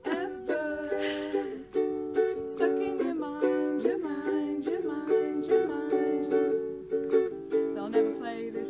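A ukulele strummed in a steady rhythm, with the chords changing every second or so.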